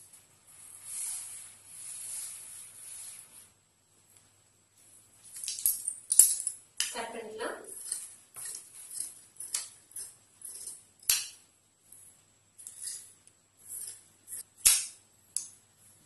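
A marker scratching a line on folded cotton fabric for about three seconds, then large tailoring scissors cutting through the cloth in a run of short snips, with a few sharp clicks of the blades.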